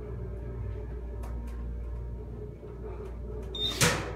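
Hydraulic elevator car travelling up, a steady low hum from its pump and motor carried into the cab, with a couple of faint clicks. Near the end a short high beep sounds as the car passes a floor.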